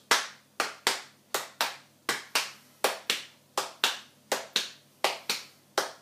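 Hand claps in a steady long-short rhythm, two claps a quarter second apart repeating about every three-quarters of a second: the "one-a, two-a, three-a, four-a" rhythm clapped out.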